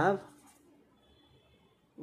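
Faint scratching of a pen writing on paper, right after the end of a spoken word.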